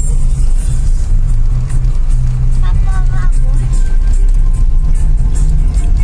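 Music playing from a car stereo, with a bass line stepping between notes, heard inside the cabin of a moving car over its engine and road rumble.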